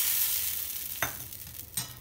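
Hot mustard-oil tempering (tadka) with mustard seeds and curry leaves sizzling as it hits a bowl of chutney, the hiss dying away over two seconds. Two short knocks, about a second in and near the end.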